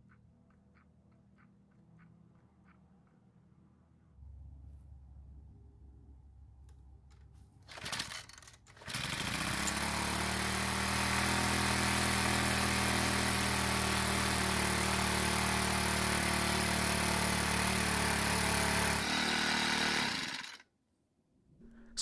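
A few faint clicks of the primer bulb being pressed, then a Troy-Bilt edger's small four-stroke engine pull-started. A short burst from the first pull near eight seconds in does not catch. The second pull a second later starts it, and it runs steadily for about ten seconds before easing off and cutting out.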